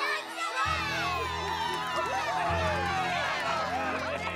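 Cartoon crowd of voices cheering and whooping together, with a music track that comes in with a low bass about half a second in.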